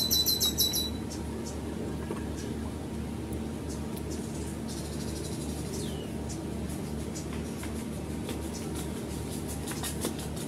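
Birds chirping: a rapid high trill in the first second, then a few faint, scattered chirps over a steady low hum.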